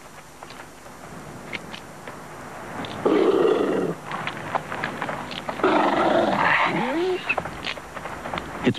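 Coyotes snarling and growling at each other in two loud bursts, about three and about six seconds in, a fight over a carcass, followed by a short rising whine.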